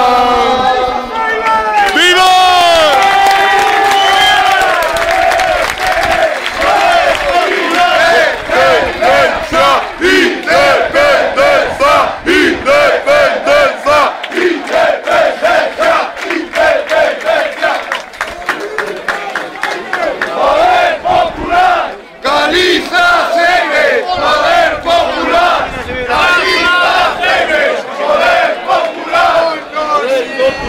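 A large stadium crowd shouting and chanting together, falling into a steady rhythm of about two beats a second.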